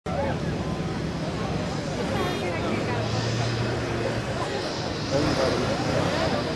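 Crowd of spectators talking over a low, steady rumble from the distant jet engines of a Boeing 747 on final approach.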